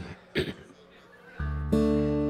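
A throat clear, then about one and a half seconds in a Weissenborn Hawaiian-style lap slide guitar is sounded. A low chord rings out, higher strings join a moment later, and the notes sustain.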